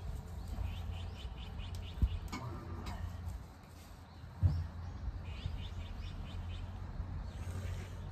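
A small bird chirping in two quick runs of repeated high notes, over a steady low rumble, with two soft knocks in between.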